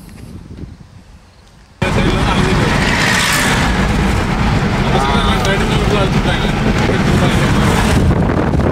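Loud, steady road and wind noise from a moving car, cutting in abruptly about two seconds in after a quiet start.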